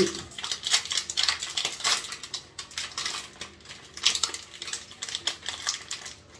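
Plastic wrapper of a chocolate snack bar crinkling and tearing as it is opened by hand, in a run of irregular crackles.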